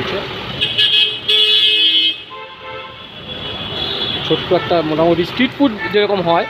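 Street traffic, with a vehicle horn sounding one held note for about a second and a half near the start. A voice talks in the second half.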